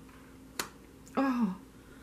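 A single sharp click as a tarot card is laid down onto the spread of cards, followed about half a second later by a short vocal sound from the reader, falling in pitch.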